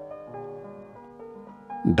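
Soft, slow instrumental background music: a piano melody of sustained notes.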